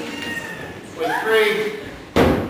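A person's voice: a short wordless vocal sound about a second in, its pitch gliding up and then holding.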